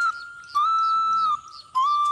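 Background music: a slow flute melody of long, high held notes with slight bends in pitch, broken by two short pauses.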